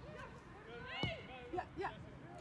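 Voices calling out across an outdoor soccer pitch during play, in short shouts, one sharper call about a second in, over a low rumble.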